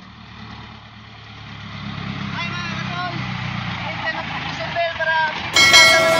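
Isuzu light truck's engine approaching and growing louder as it climbs toward the listener, with people's voices calling out over it. Near the end a bright ringing chime sets in.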